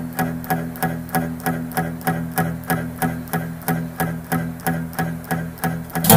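Instrumental song intro: a guitar picks a steady repeating pattern, about three notes a second, over sustained low notes. A louder strummed guitar comes in at the very end.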